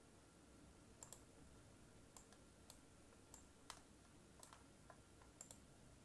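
Faint, sharp clicks, about ten of them at uneven intervals, some in quick pairs, over near-silent room tone.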